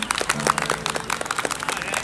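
Audience applauding with scattered, irregular hand claps, over a low steady tone that comes in about a third of a second in.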